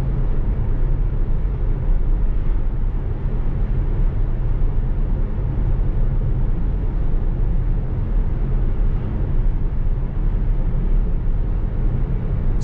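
Steady road and tyre noise with a low rumble, heard inside the cabin of a 2015 Tesla Model S cruising at about 60 mph.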